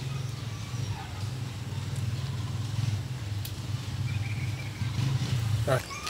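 A small engine running steadily with a low rumble that stops abruptly near the end.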